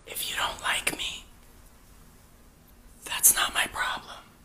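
A person whispering in two short bursts: one about a second long at the start, the other about three seconds in.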